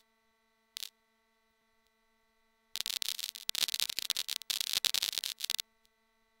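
The quanta output of a Steady State Fate Quantum Rainbow 2 analog noise module: a dense, irregular crackle of random clicks like vinyl crackle. After a single click about a second in, the crackle starts about three seconds in, runs for about three seconds and stops abruptly.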